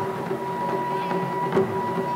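Taiko drum ensemble: a single hard drum hit about one and a half seconds in, with lighter taps around it, over a long steady high note held on a wind instrument.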